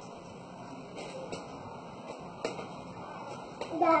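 Faint room noise with a few soft clicks, then a person's voice says a single word at the very end.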